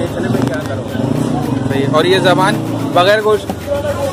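A man speaking, over the steady hum of a vehicle engine running in the street.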